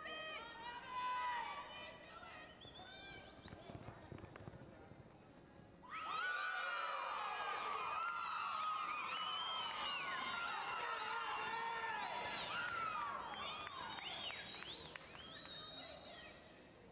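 Arena crowd whooping, whistling and cheering for a reining horse's run. A few scattered whoops come first, then the cheering swells suddenly about six seconds in, holds for about nine seconds and fades near the end.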